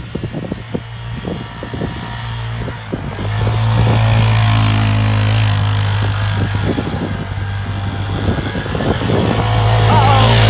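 Honda Fourtrax 300 ATV's single-cylinder engine revving hard as its wheels spin in snow: choppy and uneven for the first few seconds, then held at a steady high rev.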